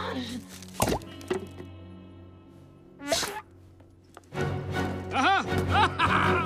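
Animated film soundtrack: a sharp thud about a second in, then a held music chord and a swoosh about three seconds in. From about four and a half seconds, high-pitched, squeaky cartoon voices chatter wordlessly over the music.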